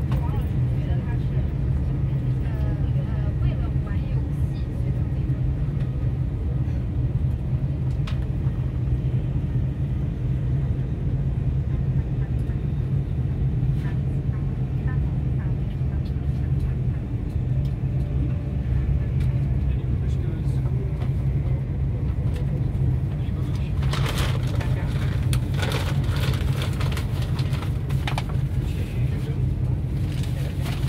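Steady low rumble of a moving vehicle heard from inside, running evenly, with a stretch of rattling clatter about three-quarters of the way through.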